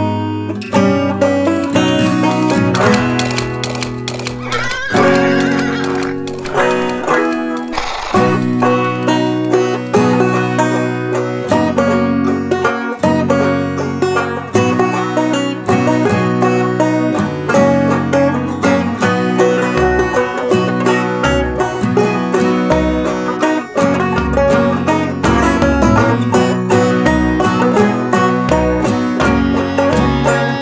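Instrumental acoustic guitar music of quick fingerpicked notes. Deeper bass notes join about twenty seconds in.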